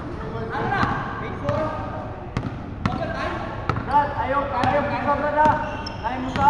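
A basketball bouncing on a hardwood gym floor as it is dribbled, in sharp irregular thuds, under the voices of players talking and calling out.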